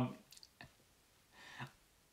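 A pause in a man's speech holding a few faint mouth clicks in the first second and a short breath about a second and a half in.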